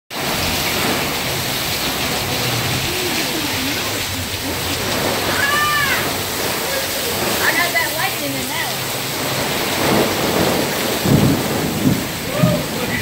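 Torrential wind-driven rain in a severe storm, pouring steadily onto and off fabric canopies. A few brief voices call out around the middle.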